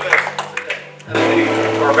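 Scattered applause dying away, then about a second in the church band comes in with a held chord that carries on steadily.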